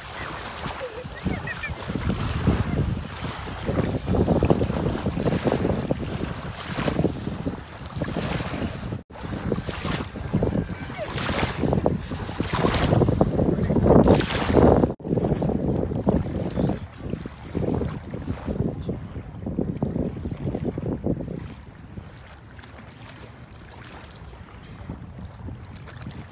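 Wind buffeting the microphone in gusts over small sea waves washing at the shore, with two abrupt breaks and a quieter last few seconds.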